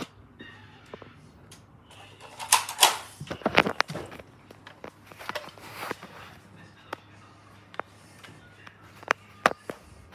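Rustling and handling noise from someone moving about, with scattered light clicks and knocks. A burst of rustling comes a few seconds in, and a few sharper clicks come close together near the end.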